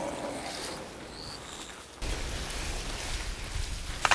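Tall grass and reeds rustling as a person pushes through them. About halfway a low wind rumble on the microphone comes in suddenly.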